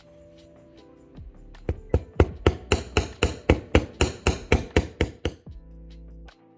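Small jeweller's hammer tapping copper wire on a steel bench block, about fifteen quick, even, sharp blows at roughly four a second starting a little under two seconds in, flattening the ends of a wire cross pendant.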